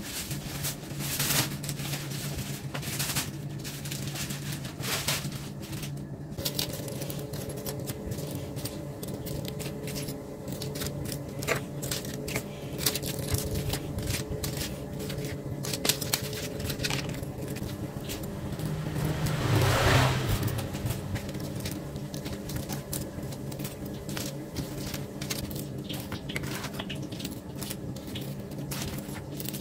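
Scattered light clicks and clatter over a steady low hum, with a brief louder swell of noise about two-thirds of the way through.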